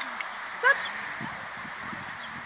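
A dog gives one short, high, rising yip about two-thirds of a second in.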